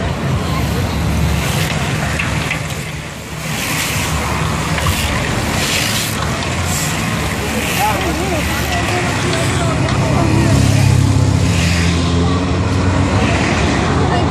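A bunch of road-racing cyclists passing at speed on a paved street circuit, over the talk of a crowd of spectators along the barriers and a steady low hum.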